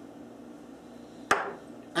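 A single sharp clink of kitchenware against glass about a second in, with a short ringing tail.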